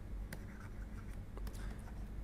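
Faint ticks and light scratches of a stylus writing by hand on a pen tablet, over a low steady hum.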